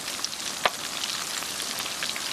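Crumbed prawns deep-frying in hot oil in a camp oven: a steady crackling sizzle, with one sharp click about two-thirds of a second in.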